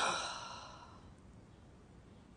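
A woman's sigh: one breathy exhale that starts sharply and fades away over about a second.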